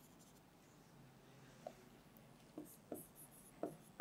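Faint strokes of a marker pen writing on a whiteboard, with a few short scratchy strokes in the second half, over near-silent room tone.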